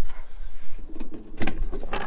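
Plastic lid of the storage compartment in a Toyota Tacoma's bed sidewall being unlatched and lifted off, with a couple of light clicks about a second in.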